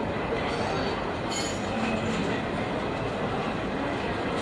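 Steady rushing background noise of an open-air market, with faint indistinct voices.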